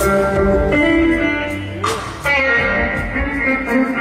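Live electric blues guitar playing held, ringing notes, with new notes struck about two-thirds of a second in and again just after two seconds.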